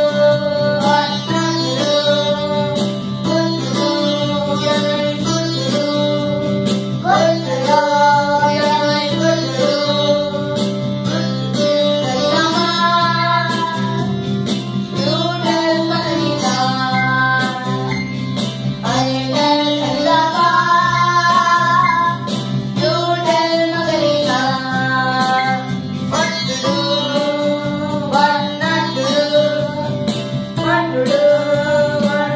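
Electronic keyboard playing a self-composed melody of held notes over a steady sustained accompaniment.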